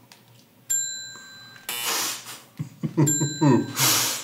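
Two bright bell dings of an edited-in sound effect, a little over two seconds apart, each ringing about a second, marking points awarded for a joke. A short noisy burst falls between them, and voices start near the end.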